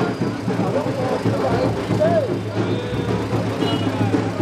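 Many people talking at once over the steady low hum of a slow-moving vehicle's engine.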